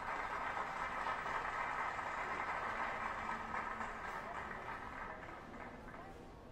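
Busy city street ambience: a steady wash of traffic and crowd noise, easing off slightly toward the end.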